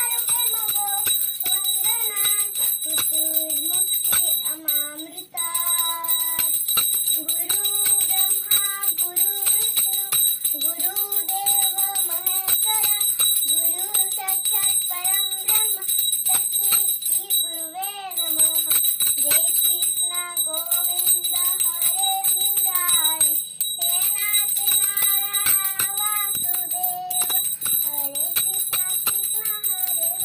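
A young girl singing an aarti hymn while a small hand bell rings continuously behind her voice, with a short break in the singing about five seconds in.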